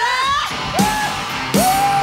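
Live rock band and singer: a voice glides up into high sung and shouted notes over a thinned-out band, then the full band comes back in about three quarters of the way through under one long high held note.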